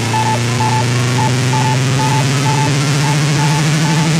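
Electronic dance music at a drumless breakdown: a loud wash of white noise over a sustained bass drone, with a short high blip repeating about twice a second. The bass drone steps up in pitch about three seconds in.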